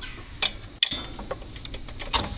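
A few light, scattered metallic clicks as a wrench works the fuel shutoff solenoid's plunger linkage by hand on a diesel engine; the plunger has stuck in and not sprung back out on its own.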